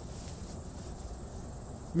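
Crickets chirring in the tall grass: a steady, high-pitched drone with no breaks.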